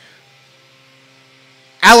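Faint, steady drone of a leaf blower running outside, a low hum of several held tones. A man's voice starts speaking near the end.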